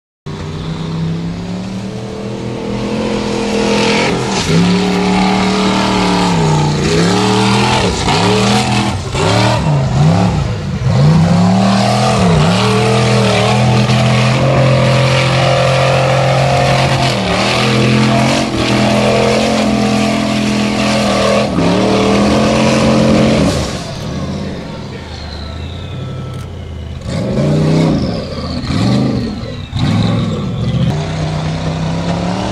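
Formula Offroad buggy's engine revving hard on a steep dirt hill climb, the revs rising and falling again and again as the throttle is worked and the tyres scrabble for grip. The engine note eases off about three-quarters of the way through, then revs up again near the end.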